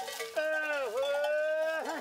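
One long moo from one of the starving cattle, lasting about a second and a half, dipping in pitch partway through and rising again before it stops.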